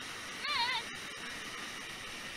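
Steady rushing of white water pouring over a waterfall, with a single brief, high, wavering call about half a second in.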